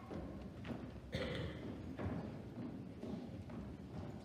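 Footsteps on the hollow stage: a few dull, separate thumps and knocks, roughly a second apart, over low background noise.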